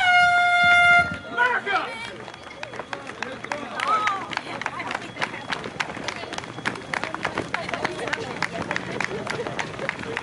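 A race starting horn sounds one loud, steady blast of about a second, signalling the start. Then a crowd of runners sets off on the pavement, many footsteps patting quickly, with voices calling out among them.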